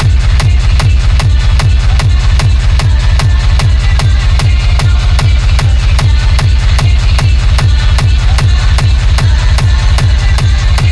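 Hard techno DJ mix: a fast, steady four-on-the-floor kick drum, about two and a half beats a second, with heavy distorted bass and a dense layer of synth noise on top.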